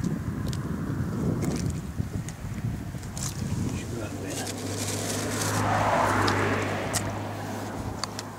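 A motor vehicle's engine passing by: a steady low hum that swells to its loudest about six seconds in and then fades, over scattered clicks of handling noise.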